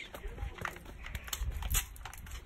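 Handling noise from a phone camera being carried: low rumbles and thumps with scattered small clicks and knocks.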